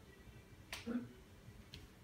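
Quiet room after the music has stopped, broken by one sharp click a little under a second in and a brief low tone just after it.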